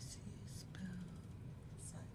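A woman's quiet, half-whispered speech: a few soft mumbled syllables and breathy hisses over a steady low room hum.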